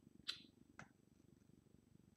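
Near silence: room tone, broken by a brief hiss near the start and a faint click just under a second in.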